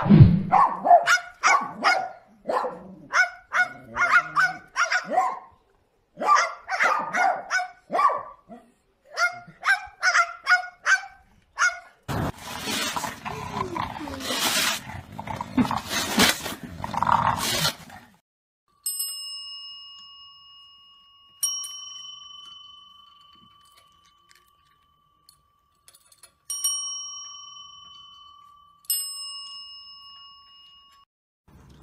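A dog barking in quick runs of short yaps, then a few seconds of dense noise. After that a small bell is struck four times, each ring fading out.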